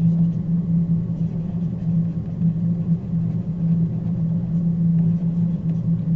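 A steady low hum with no speech over it: the recording's constant background hum.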